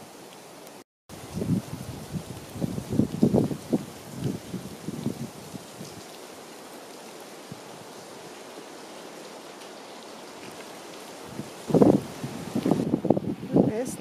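Steady rain hiss, with irregular low thumps and rustles over the first few seconds and again near the end.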